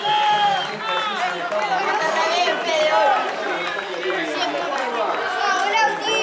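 Several voices talking and calling out over one another on a football pitch during a stoppage in play.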